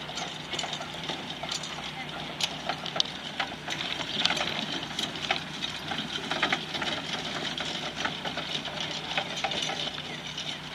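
Faint, indistinct background talk over a steady outdoor hiss, with scattered light clicks and rustles throughout.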